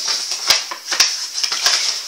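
Paper being handled, a handmade aged-parchment letter and envelope rustling, with two sharp clicks about half a second apart, over a steady hiss.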